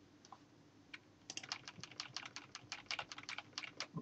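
Computer keyboard typing: a quick run of light keystroke clicks starting about a second and a half in, after a lone click.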